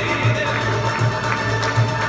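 Andalusian orchestra of violins, ouds, double bass and hand percussion playing a melody over a rhythmic low pulse.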